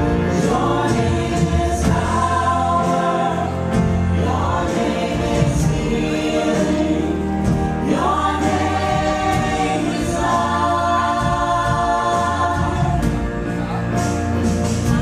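Contemporary worship band performing a song: several singers in harmony over piano, keyboards, electric and acoustic guitars, bass guitar and drums.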